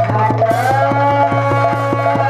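Odia Pala devotional music: a singing voice holding one long note, which steps up in pitch about a quarter of the way in. Under it runs an even, fast beat of about seven strokes a second on a double-headed barrel drum and large brass cymbals, over a steady low hum.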